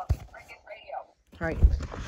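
Mostly voices: faint whispering, then a man saying "alright". Low thuds under his voice near the end come from cardboard packaging being handled close to the microphone.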